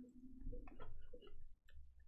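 A few faint, scattered clicks.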